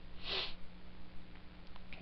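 A man's single short sniff a quarter of a second in, then a faint steady electrical hum.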